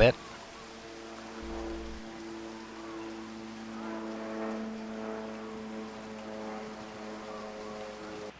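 Background music: a soft, sustained chord of several held notes that fades in over the first second and stays steady.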